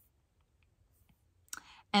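Near silence for about a second and a half, then a short breath-like mouth noise just before a woman starts speaking.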